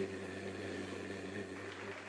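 A quiet, steady low hum with several even overtones, holding one pitch.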